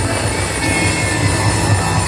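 Loud live band music with a steady bass line under a dense wash of noise.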